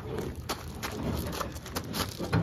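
Handling noise as an upright refrigerator is pushed off a hand truck onto a pickup truck's tailgate: a few sharp knocks and scrapes over a low rumble.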